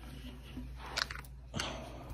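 Faint handling of a wooden cutting board as it is laid on a person lying on the floor: two light knocks, about a second in and again half a second later, over a low steady hum.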